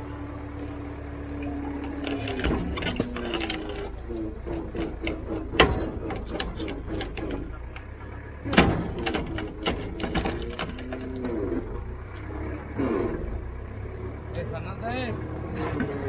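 Hydraulic wood splitter's engine running steadily, with a steady whine that stops about two and a half seconds in. Two sharp cracks, about three seconds apart, come near the middle.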